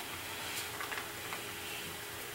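Quiet room tone: a faint steady hum and hiss, with a few faint ticks.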